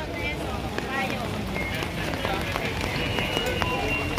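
Busy street ambience with the chatter of people talking in the background, no single voice in front.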